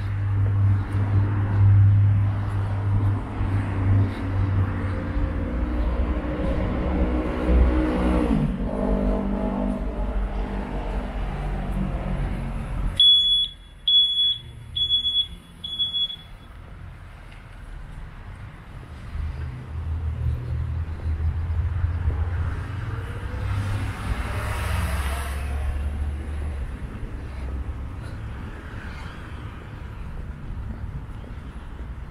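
Road traffic on the street beside the sidewalk. A vehicle's engine passes with a falling pitch and cuts off sharply about halfway through. Four short, high electronic beeps follow, and then a second vehicle rumbles past near the end.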